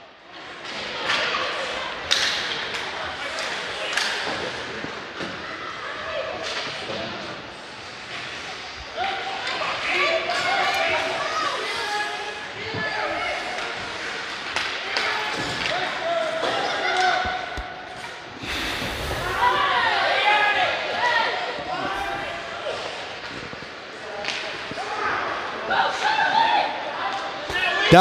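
Ice hockey rink ambience: voices of spectators and players echoing in the arena, with scattered thuds and slams from play on the ice.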